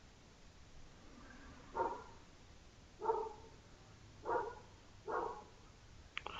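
Four short animal calls, about a second apart, over quiet room tone.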